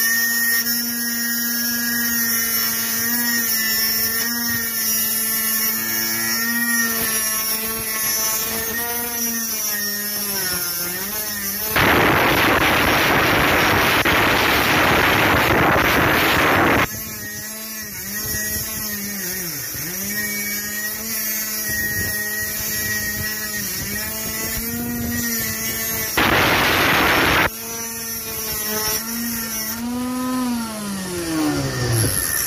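12 V 775 DC motor spinning an abrasive grinding disc. It runs with a steady whine whose pitch sags whenever steel is pressed against the wheel. Two loud spells of grinding hiss come as the steel bites into the disc: one of about five seconds, starting a little over a third of the way in, and a short one later on.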